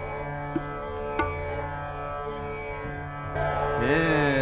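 Hindustani classical recital in a gap between vocal phrases: a steady drone and held notes from the accompaniment, with two light tabla strokes. Near the end the singer comes back in with a rising glide. It is an old radio recording with a dull top end.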